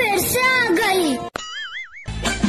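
A voice speaking for just over a second, then a click and a cartoon-style sound effect: a tone wobbling quickly up and down.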